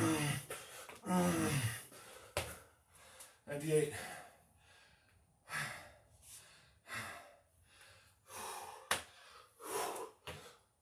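A man's heavy, voiced gasping and groaning breaths while doing Navy SEAL burpees, labouring late in a hard set of a hundred. A couple of sharp knocks cut through the breathing.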